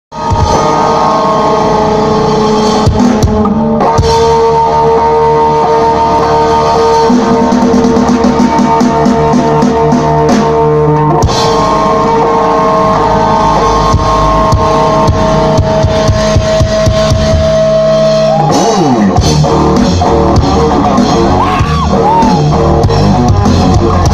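Live rock band playing loud on stage: electric guitar holding long sustained notes over a drum kit, with sliding pitch bends near the end.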